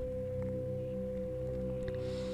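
Background meditation music: a single steady tone held unchanged over a soft low drone.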